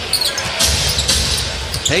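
A basketball bouncing on a hardwood court amid the steady background noise of an arena during a game.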